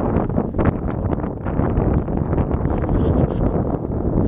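Wind buffeting the microphone: a loud, uneven low rumble with irregular gusts.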